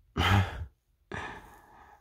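A man sighs: a short voiced sound, then a long breathy exhale that fades away.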